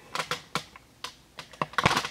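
A series of light, irregular clicks and taps, about ten in two seconds, bunched together near the end with one heavier knock.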